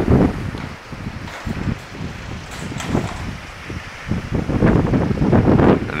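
Gusty wind buffeting the microphone in an uneven low rumble. It eases about a second in and builds again near the end.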